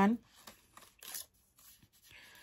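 Paper pages of a paperback book rustling as it is held and handled, with one short, sharper rustle about a second in.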